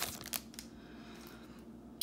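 Plastic wrapper of a football trading-card pack crinkling briefly as it is pulled off the cards, dying away within the first half second.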